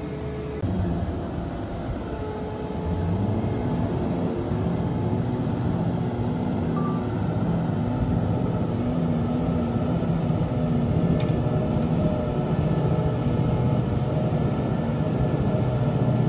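Self-propelled feed mixer wagon's diesel engine running under load as its front milling cutter drum loads feed, the engine note wavering up and down.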